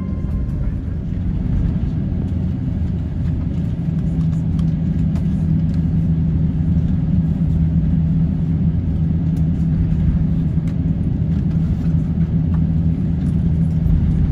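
Airbus A350 cabin noise on the ground: a steady low rumble with a hum that strengthens a few seconds in, with a few faint clicks.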